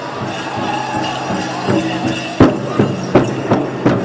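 Pow wow drum group singing a dance song over a big drum, with loud drum strokes in the second half, and the jingling of dancers' bells.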